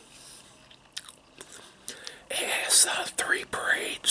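Close-miked mouth sounds of a man chewing a mouthful of corned beef and cabbage: faint wet clicks and smacks at first, then a much louder stretch of chewing and mouth noise lasting about a second and a half near the end.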